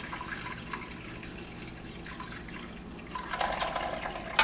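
Hot water being poured from a glass measuring cup into a crock pot's ceramic insert, getting louder in the last second.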